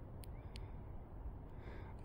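Quiet outdoor background with a low rumble, broken by two faint short clicks about a third of a second apart early on.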